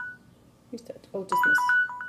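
Smartphone timer alarm ringing: a repeating run of short electronic beeps alternating between two pitches, one run ending as the sound begins and another starting about a second and a quarter in. The alarm marks the end of the rooibos tea's steeping time.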